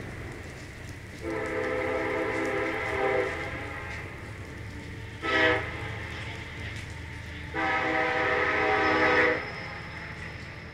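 A horn sounding a steady chord of several tones in three blasts, long, short, then long, over a steady low rumble.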